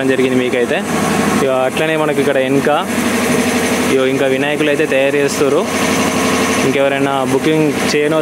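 A person's voice in phrases of a second or so, over a steady low hum.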